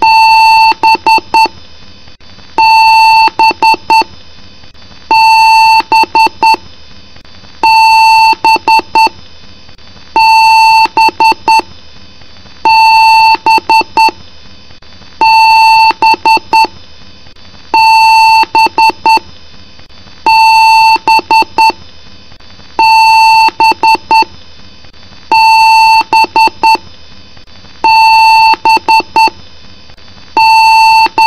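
PC motherboard speaker sounding a BIOS beep code during power-on self-test: one long beep followed by a quick run of short beeps, the pattern repeating about every two and a half seconds, over a steady background hum. A long-and-short pattern like this is how an Award BIOS signals a hardware fault at startup.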